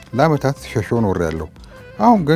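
A person's voice in two phrases with strongly bending, wavering pitch, breaking off about one and a half seconds in.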